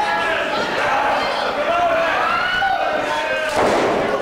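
A wrestler's body slammed onto the padded ring mat with one loud thud about three and a half seconds in, over overlapping shouting voices.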